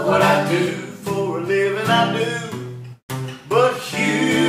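Acoustic guitar strummed with voices singing a slow country song together. The sound drops out for a split second about three seconds in, then resumes.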